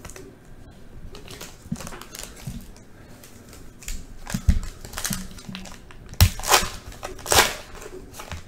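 Foil trading-card pack wrapper crinkling as it is handled, then torn open with a few loud rips near the end.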